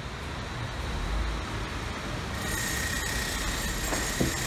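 Steady outdoor background noise of passing street traffic with a low rumble, and a faint steady high whine joining about halfway through.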